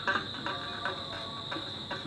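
A steady, unbroken high-pitched drone, the background under a pause in the narration, with a few faint brief fragments of voice.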